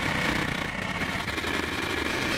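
Noisy electronic synthesizer music: a steady, dense buzzing rumble with a high hiss running through it, with no clear notes or beat.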